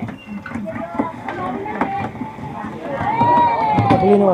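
Background chatter of several people talking, with one voice calling out in a long, drawn-out tone about three seconds in.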